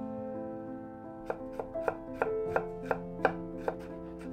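Chef's knife chopping fresh ginger on a wooden cutting board: about eight quick knocks of the blade on the board, starting just over a second in, over soft background music.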